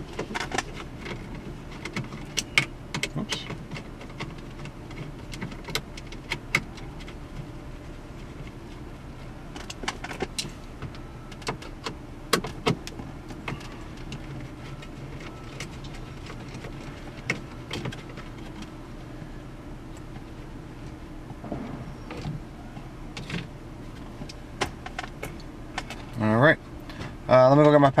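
Screwdriver backing out small screws from the dash's radio mounting bracket, with scattered light metal-and-plastic clicks and taps throughout, over a steady low hum.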